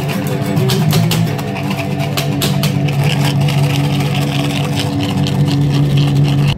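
Guitar music with no singing: strummed chords, then a long chord held and ringing.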